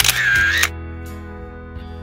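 A camera-shutter sound effect lasting just over half a second, with a ringing tone in it, at the start, over steady background music.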